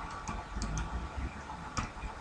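Faint, irregular light clicks and taps of a stylus on a drawing tablet as a word is handwritten, over a low background hiss.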